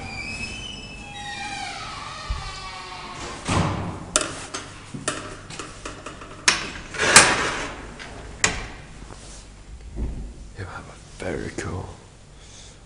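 A voice briefly at the start, then a series of sharp knocks and clunks from the elevator doors of a hydraulic elevator being worked, the loudest clunk about seven seconds in.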